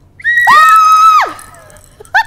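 A loud, high-pitched squeal held on one steady note for about a second.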